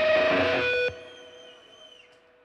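Electric guitar chord struck and held for just under a second, then cut off sharply; a faint ringing tone lingers and fades away.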